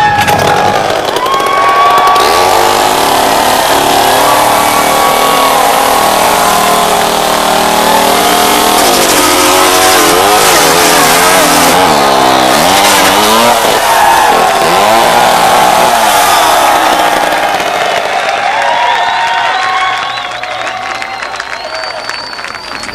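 An unconverted two-stroke chainsaw running on hemp fuel, revved up and down over and over, its pitch rising and falling. It drops away near the end.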